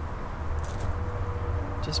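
Steady low rumble of background noise with a faint steady hum under it; any scratching from the two celery sticks being rubbed together is barely there.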